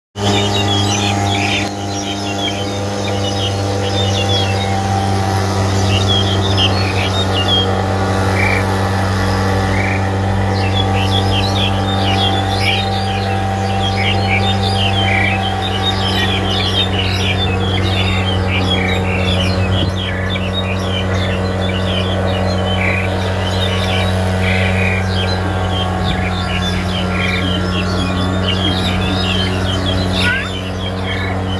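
Black-collared starling singing: a dense, continuous run of quick chirps and chatter, with a short held note every few seconds, over a steady low hum.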